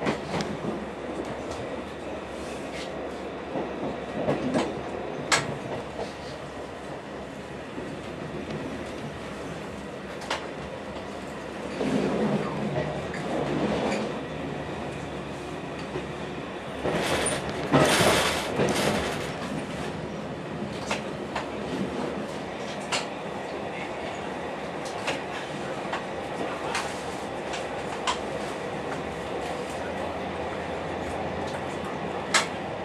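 Dm7 'Lättähattu' diesel railcar running, heard on board: a steady running noise with sharp wheel clicks over rail joints, and two louder stretches of clattering about 12 and 18 seconds in as it crosses switches.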